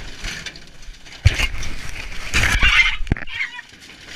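Broken boards and rubbish being dragged and shifted inside a steel skip: a sharp knock about a second in, then about two seconds of crunching and clattering debris that ends in a sharp crack, followed by a brief wavering squeal.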